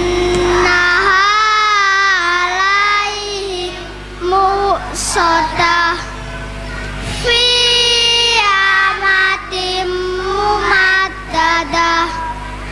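A group of young children singing together in long melodic phrases, with held, wavering notes and short breaks between phrases, over a steady low hum.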